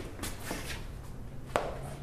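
Feet shuffling on gym mats during a close-range punch-defense drill, with a few faint knocks and one sharp slap of body contact about a second and a half in.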